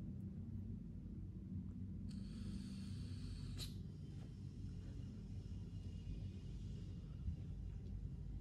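Faint hiss of a puff drawn on an Oxva Xlim pod vape with a 0.8 ohm cartridge at 18 W. The hiss lasts about two seconds starting about two seconds in, with a short click near its end, over a low steady room hum.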